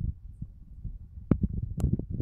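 Low, thumping rumble of handling noise on the microphone, with two sharp clicks in the second half.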